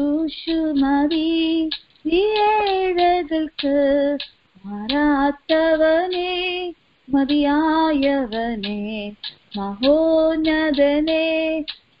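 A woman singing a Christian devotional song solo, in held, gliding phrases a few seconds long separated by short breaths, heard over a telephone conference line.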